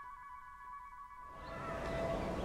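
The fading tail of a bell-like intro chime, a held chord of several steady tones that dies away about a second in. Faint background noise rises near the end.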